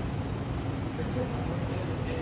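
Steady city street background noise: a low traffic hum with faint voices mixed in.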